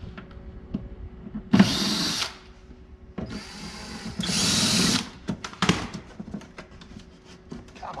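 Cordless drill run twice to back out the screws on a spa control box cover, a short burst and then a longer one that gets louder in its second half. Then light clicks and rattles as screws and cover are handled.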